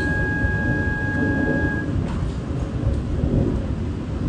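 Loud, uneven low rumble buffeting a phone's microphone, typical of wind outdoors. A thin, steady high tone sounds over it for the first two seconds, then stops.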